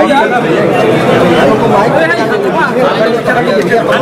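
Loud chatter of many voices talking over one another in a tightly packed crowd, with no single voice standing out.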